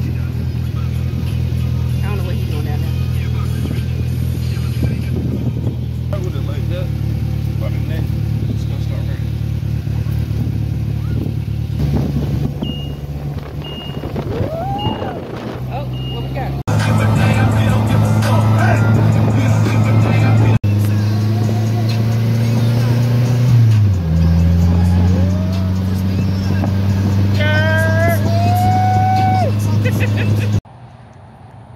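Polaris Slingshot three-wheeler's engine running as it is driven, with music playing over it.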